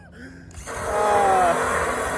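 Cordless drill switched on about half a second in and running under load, its pitch sagging now and then as it bites, working to strip paint.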